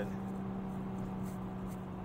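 Steady in-cabin drone of a 2021 Toyota Supra 3.0's turbocharged inline-six and road noise while cruising, an even hum that holds one pitch with no revving or gear change.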